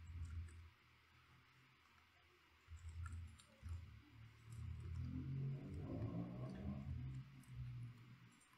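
Faint computer mouse clicks and keyboard taps, with low rumbling stretches in between, the longest from about five to almost eight seconds in.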